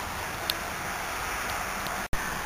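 Steady background hiss with wind on the microphone, and a faint low hum under it; a light click about half a second in.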